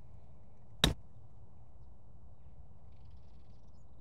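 Golf wedge striking a ball on a pitch shot: a single sharp click about a second in, over steady low background noise.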